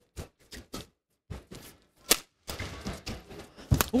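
Badminton rackets hitting a shuttlecock in a fast doubles rally: a quick string of sharp hits, the loudest about two seconds in and just before the end.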